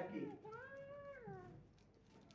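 A single faint, high, drawn-out meow-like call that rises, holds and then falls, lasting about a second and a half.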